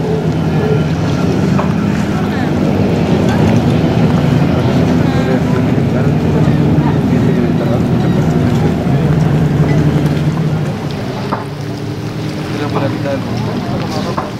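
A motorboat engine drones steadily over the lake, its pitch shifting a little every few seconds, then grows quieter about eleven seconds in.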